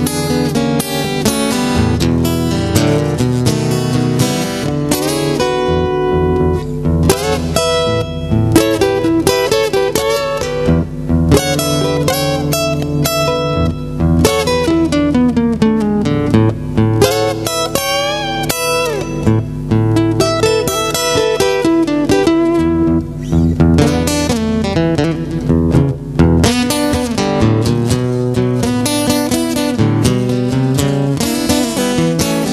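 Solo acoustic guitar played fingerstyle as an instrumental blues break: a steady low bass line under picked single notes, with a few notes sliding in pitch.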